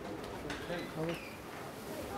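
Quiet, indistinct talk from people around a table, with short murmured phrases and no clear words.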